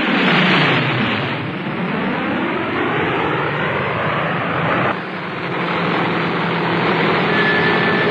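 Short Sunderland flying boat's radial engines droning as it flies past, the engine pitch falling over the first few seconds. About five seconds in the sound changes abruptly to a steady engine drone, with a brief thin high tone near the end.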